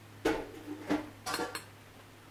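Sharp metallic clanks with brief ringing from a passing freight train of covered hopper cars: one about a quarter second in, another near the one-second mark, then a quick cluster of three just after.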